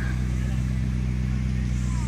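McLaren 650S Coupe's twin-turbocharged V8 idling, a steady low hum with no revs.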